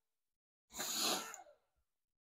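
A single short, forceful breath from a person, about a second in: a quick noisy burst that lasts under a second.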